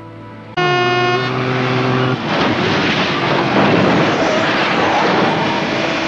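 A vehicle horn blares, held for about a second and a half. It gives way to a long, loud rush of crash noise as a car goes off the road and overturns, with a music score underneath.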